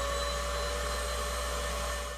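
Vacuum cleaner running steadily, drawing air through a dust-collector nozzle fitted on its tube. A high motor whine levels off over an even rush of air and a low hum.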